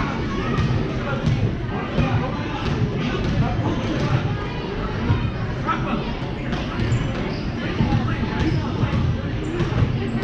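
A basketball bouncing on a gym floor in irregular thuds during a youth game, amid indistinct voices in the gym.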